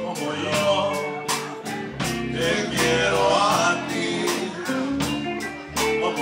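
Live bar band playing an up-tempo country-blues number on electric guitars and drums, with a steady beat of about two and a half drum hits a second.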